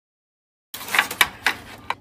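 After a moment of silence, a metal spoon clinks and scrapes against a ceramic baking dish while basting a roast turkey: a handful of sharp clicks.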